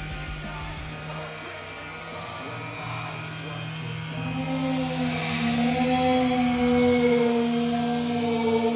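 An aerosol insecticide spray can hissing in one long burst that starts about halfway through, with steady droning tones underneath.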